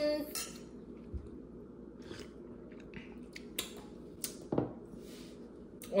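A few short clicks and knocks of drinking glasses being handled on a wooden table, mostly in the second half, between quiet stretches.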